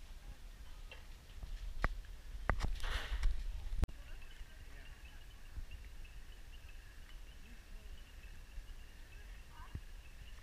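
Distant burning campsite at night: a few sharp cracks and a brief hiss in the first four seconds, then the sound breaks off and a faint steady high chirring runs on.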